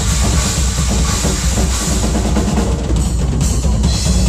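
A large double-bass-drum Pearl kit played continuously and densely, with bass drums, snare and a wash of cymbals. The cymbals thin out briefly about three seconds in, then come back.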